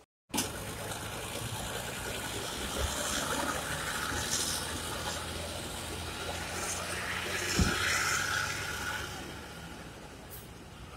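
Steady rushing noise with a low engine hum from idling diesel coaches in a bus yard, with a single brief low thump about three-quarters of the way through.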